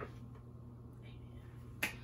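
A single sharp hand clap near the end, over faint room tone.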